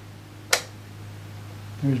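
A single sharp click from a front-panel switch of a Johnson Viking Ranger II tube transmitter, about half a second in, over a steady low hum.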